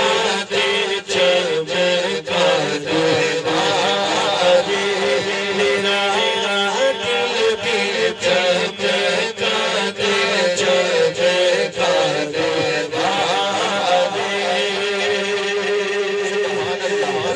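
A man reciting a naat, a devotional song in Urdu, singing into a microphone through a PA. Underneath runs a held low drone and a steady beat of about two a second.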